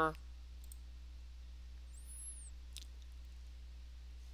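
A couple of faint computer mouse clicks about half a second in, over a steady low hum.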